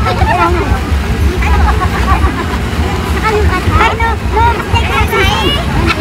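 Several people's voices talking and calling over one another, with a steady low rumble underneath.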